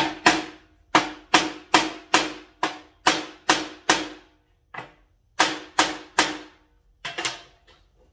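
Hammer blows driving the tip of a freshly heat-treated and tempered kitchen knife blade into 3/4-inch plywood for a temper test. About fifteen sharp strikes come two or three a second, each ringing briefly, with a short pause about halfway and another near the end.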